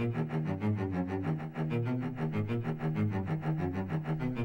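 A MIDI cello part played back on a virtual cello: a line of short, evenly spaced low notes, every note at the same velocity, so the playing sounds flat and unvaried.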